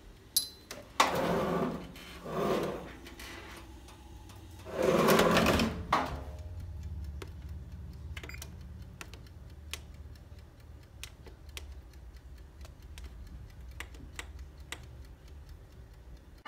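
Clatter and scraping as a dish is handled into the oven, ending in a sharp bang a little before the middle. Then a low steady hum runs under a string of light clicks as the touch keypad on a Frigidaire electric range is pressed to set the oven timer.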